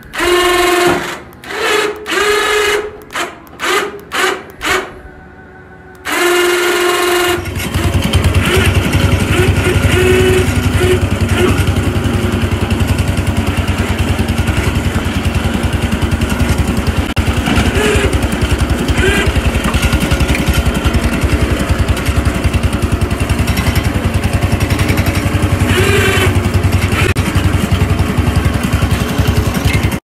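Cub Cadet 106 garden tractor's single-cylinder engine starting about seven seconds in and then running steadily, with rapid, even firing pulses through its upright muffler.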